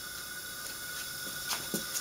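Steady hiss of compressed air leaking from an old Volkswagen engine's cylinder under a 100 psi leak-down test, with a faint steady whistle; the cylinder holds only 40 psi, heavy leakage. A few light knocks come near the end.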